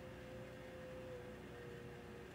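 A woman softly humming one long, steady note with closed lips, the pitch dipping slightly about a second in.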